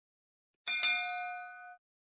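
A single bright, bell-like ding sound effect, like a notification bell: it strikes sharply a little over half a second in, rings with several clear overtones for about a second while fading, and cuts off suddenly.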